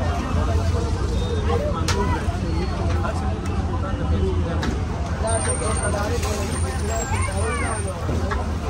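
Busy street ambience: many people talking over a steady low rumble of traffic engines, with a couple of sharp knocks.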